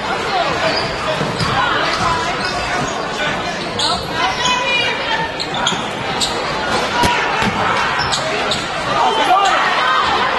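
Live game sound of high school basketball in a crowded gym: the ball bouncing on the hardwood floor in sharp knocks, over a steady din of crowd voices and shouts echoing in the hall.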